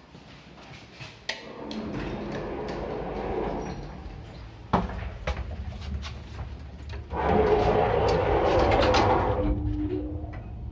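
An old passenger lift at work: its sliding doors rumble along their tracks twice, with a sharp knock between, and the lift machinery hums low underneath.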